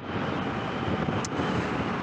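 Steady wind rush on the microphone over the running V-twin engine of a Honda XL650V Transalp motorcycle under way on the road.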